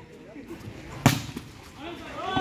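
A volleyball struck once by hand: a single sharp smack about a second in, with faint voices around it.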